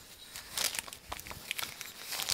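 Cotton drawstring bag rustling in short bursts as hands work its knotted cord loose, with a few light clicks and scrapes from the handling.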